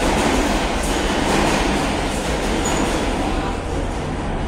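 A subway train rumbling through the station: a loud, steady noise that swells a little during these seconds.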